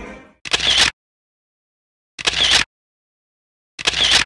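Camera shutter sound effect, clicking three times about a second and a half apart, each a short double click, with dead silence in between. Music fades out just before the first one.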